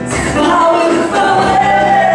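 Music with singing voices, with sustained sung notes.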